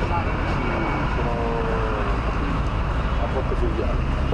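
People talking at a gate, over a steady low outdoor rumble.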